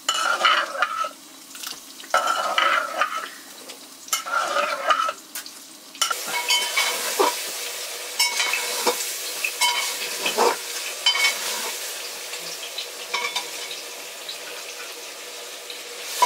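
A metal ladle scrapes and stirs in a cooking pot in three strokes about two seconds apart. Then a steady frying sizzle follows, with metal pots and utensils clinking now and then.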